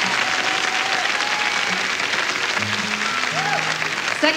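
Concert audience applauding, with a few soft plucked notes from an acoustic guitar underneath.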